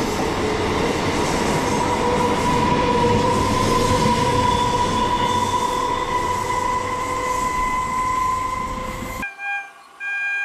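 EMU local train running alongside the platform: a steady rumble of wheels on rails with an electric motor whine that rises slowly in pitch as the train picks up speed. Near the end the sound cuts off sharply, and a short horn note sounds.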